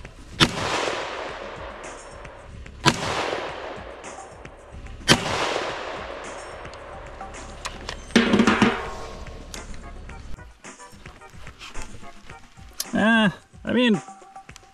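Three shots from an Astra VG4 rifle in .223, about two and a half seconds apart, each followed by a long echo. They are the last three-shot group fired to confirm the zero of a cheap red dot sight.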